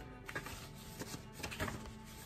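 Stiff card envelope being handled and opened, giving a few short paper rustles and crinkles, over faint background music.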